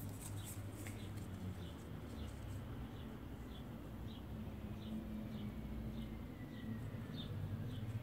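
Faint short high-pitched chirps repeating about twice a second over a low steady hum.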